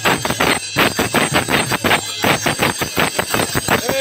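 Loud live percussion music: fast, rhythmic strikes, several a second, in a crowd.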